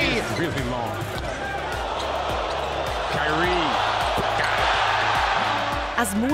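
Basketball arena crowd noise swelling into a loud cheer as a basket is scored, with a few ball bounces on the hardwood court before it and a brief broadcast commentator's voice. Background music with a steady bass runs underneath.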